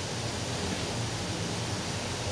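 Steady, even background hiss of room noise, with no other sound standing out.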